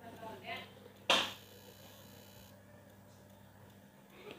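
A faint voice briefly, then one sharp snap about a second in, trailing off in a short hiss.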